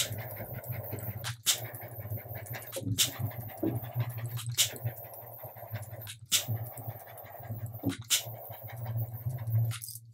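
A small butane torch hisses as it is passed over freshly poured epoxy resin to pop the surface bubbles. It fires in bursts of about a second and a half, and each restart begins with a click.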